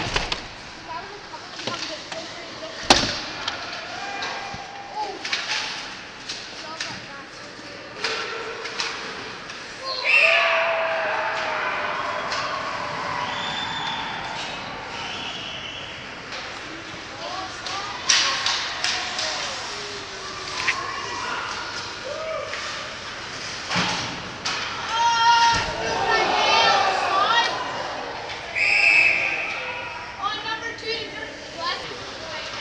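Ice hockey game sounds in an echoing rink: sharp bangs of the puck, sticks and players hitting the boards and glass, over spectators' shouting voices that swell about a third of the way in. A short shrill referee's whistle sounds near the end.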